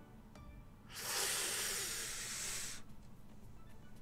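Online slot machine game's whoosh sound effect: a hissing rush lasting just under two seconds, starting about a second in, as the free-spins win screen closes, over the fading tail of the game's music.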